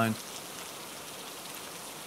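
Steady rain ambience, an even patter of raindrops running as a background bed.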